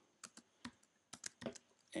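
Computer keyboard typing: several faint, irregularly spaced key clicks as a line of code is typed.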